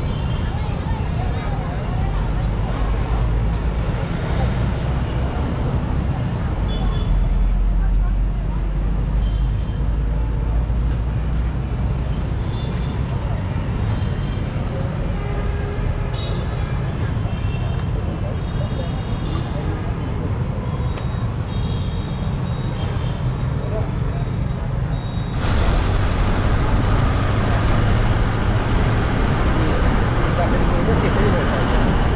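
Street traffic at a busy intersection: passing motorbikes and other vehicles with people's voices in the background. About 25 seconds in it switches abruptly to louder, steady road and engine noise from inside a moving bus.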